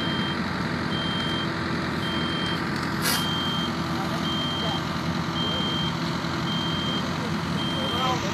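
A construction machine's reversing alarm beeping steadily, one even tone about once a second, over the steady running of a heavy engine. There is one sharp metallic knock about three seconds in.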